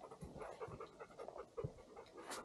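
Panting breaths of someone climbing a steep slope, with irregular footsteps and rustling through low brush and twigs.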